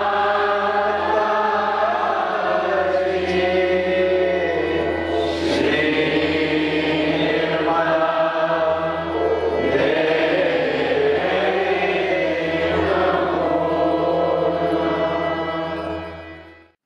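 A group of voices singing a devotional chant together over a steady low drone.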